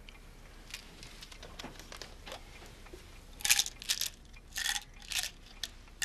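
Tablets rattled out of a pill bottle, about four short shakes starting a little over three seconds in.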